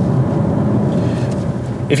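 A Jaguar XJ with a 300 hp turbodiesel V6 driving past, a steady low engine hum with tyre noise on the road.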